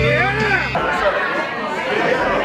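Music with a singing voice over a steady bass stops suddenly under a second in, giving way to the chatter of many people talking at once in a room.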